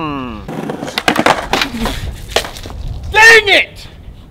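A man's falling 'mm' of satisfaction after a sip, followed by about two seconds of dense crackling and clicking, then a short loud vocal exclamation near the end.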